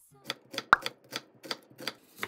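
A knife chopping leafy greens on a wooden cutting board: a run of sharp taps, about three a second, with one louder knock a little under a second in.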